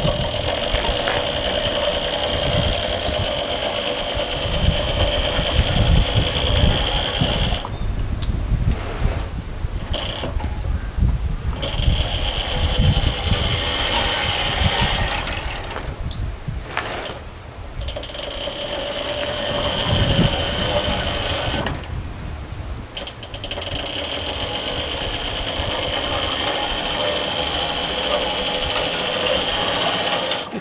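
Kunray 72-volt electric motor of a Kawasaki quad converted to electric drive, giving a steady high whine as it drives the quad. The whine cuts out and comes back several times, with gaps of one to two seconds. The motor is fed only the three amps a charger supplies, so it moves the quad slowly under load.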